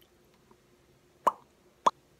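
Two short wet mouth clicks, like lip smacks, about half a second apart, in an otherwise near-silent gap between a man's sentences.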